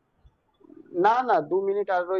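A short silence, then a voice speaking from about a second in, with a drawn-out, pitched syllable.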